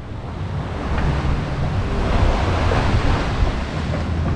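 Surf washing on the shore, a steady rushing noise, with wind rumbling on the microphone.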